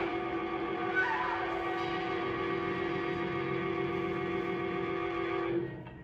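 Horror film score: a loud chord of many held tones, like a wind instrument or organ, sustained without a break and cutting off about five and a half seconds in.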